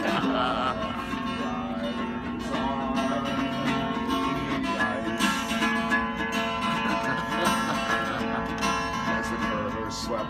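Instrumental break in a song, with guitar playing and no singing.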